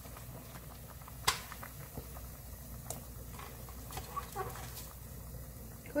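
Soft patters and light taps of sliced onion dropped by hand into a pot of simmering soup, with one sharp click about a second in.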